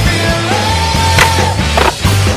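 Rock music with skateboard sounds mixed in: the board's wheels rolling on concrete, and two sharp clacks of the board, about a second in and near the end.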